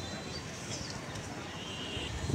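Station platform ambience: a steady background of distant voices and footsteps, with no train running.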